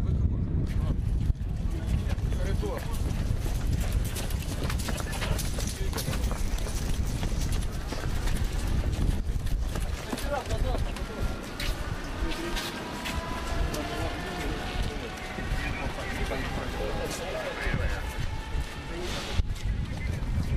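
Dense, irregular clattering knocks over a low rumble, with people's voices. About halfway through, a faint wavering tone drifts in pitch for several seconds.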